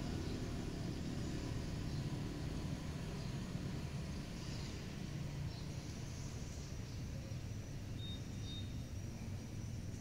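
Steady low rumble of distant street traffic, with two brief faint high tones near the end.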